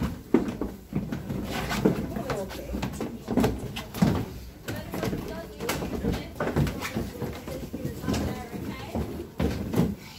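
Several people talking indistinctly, with scattered footsteps and knocks on wooden stairs and deck boards.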